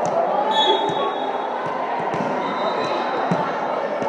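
A volleyball bounced several times on a hardwood gym floor, a short thud with each bounce, over the steady chatter of people in a large echoing gym.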